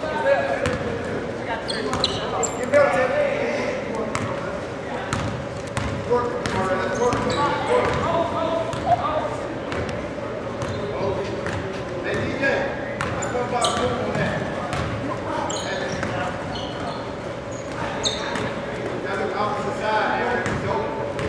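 Basketball game in a gym: the ball bouncing on the hardwood court with repeated sharp knocks, over a steady bed of crowd and player voices echoing in the large hall. A thin steady hum runs beneath.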